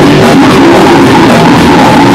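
Live rock band playing with electric bass and guitars, very loud, at the top of the recording's level throughout.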